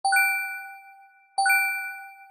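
A bell-like chime sounds twice, about a second and a half apart, each stroke a single clear ding that rings out and fades away.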